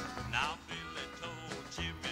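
Country band playing the instrumental opening of a song, with a melody instrument sliding and bending its notes.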